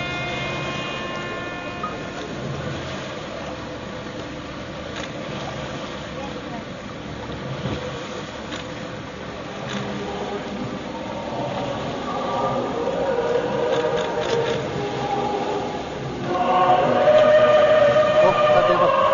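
A boat's engine runs with a steady low rumble. From about two-thirds of the way through, several voices begin chanting a hymn, growing louder near the end.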